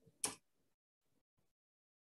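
A single sharp keyboard key click about a quarter second in, the Enter key that runs the typed command; otherwise near silence.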